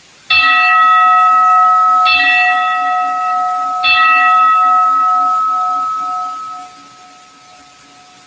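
An altar bell struck three times, about two seconds apart, at the elevation of the chalice during the consecration. Each strike rings on, and the ringing fades away a few seconds after the last one.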